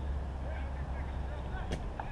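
Outdoor ambience dominated by a steady low rumble of wind on the microphone, with faint distant voices and a single sharp click near the end.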